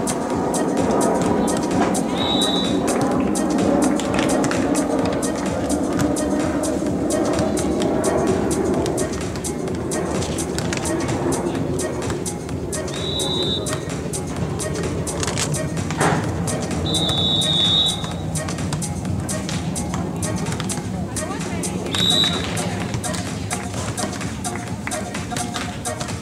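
Background music, with a volleyball referee's whistle blown four times: short blasts about two seconds in, about thirteen seconds in and about twenty-two seconds in, and a longer blast of nearly a second around seventeen seconds. A single sharp knock sounds around sixteen seconds.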